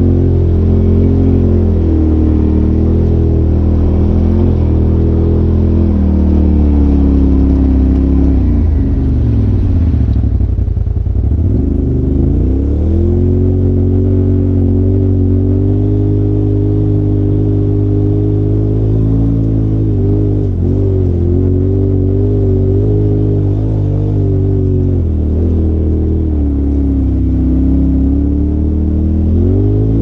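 Polaris RZR Turbo side-by-side engine running at high revs while climbing a dirt trail. The pitch drops sharply about ten seconds in and climbs back, with smaller dips later.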